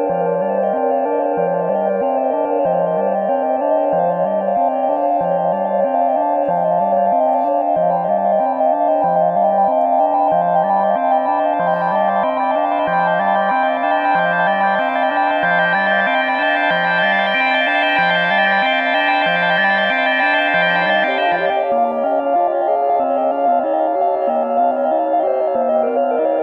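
Moog Subharmonicon analog synthesizer playing a sequenced, repeating low note pattern under a sustained drone. The tone grows brighter through the middle as the filter is opened, then turns darker abruptly near the end as the low pattern shifts.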